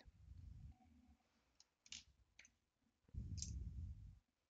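Faint clicks of coloured pencils being put down and picked up on a desk as one pencil is swapped for another, with a dull low rumble of handling near the start and again near the end.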